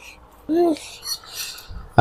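A short hummed vocal sound that rises and falls about half a second in, over faint scrapes and light clinks of eating from ceramic plates.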